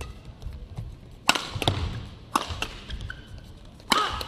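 Badminton rackets striking a shuttlecock during a doubles rally: a run of sharp hits, about five, the loudest a little over a second in.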